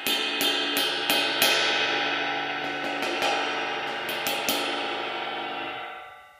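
Hammered bronze cymbal played with the butt end of a Flix brush's handle: a run of light, quick taps, then a few more in the middle, over a steady ringing wash that fades out near the end.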